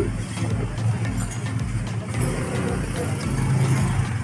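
Road traffic: a steady low hum of vehicle engines running.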